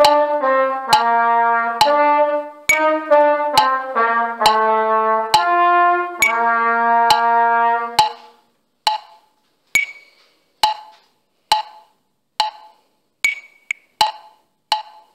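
Trumpet playing a stepwise run of short eighth notes over steady metronome clicks. It ends the study on a held low note that stops about eight seconds in. After that the metronome clicks on alone, a little faster than once a second.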